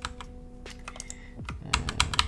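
Computer keyboard keystrokes: scattered single key presses, then a quicker run of several clicks near the end.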